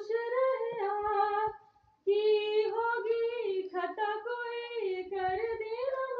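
A woman singing a Hindi farewell song unaccompanied, holding long sung notes, with a short breath pause just before the two-second mark.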